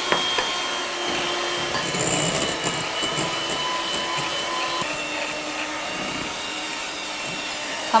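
Electric hand mixer running steadily with a motor whine, its beaters working beaten egg into creamed butter and sugar in a glass bowl.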